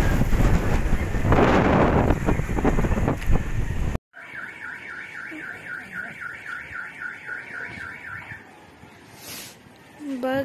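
Strong wind buffeting the microphone for about four seconds. It cuts off abruptly, and a much quieter scene follows with a faint repeating chirp, about four a second, that stops a few seconds later.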